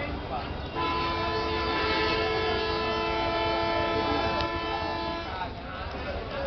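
A horn sounding one long, steady chord of several tones, starting about a second in and lasting about four and a half seconds, over continuous background noise.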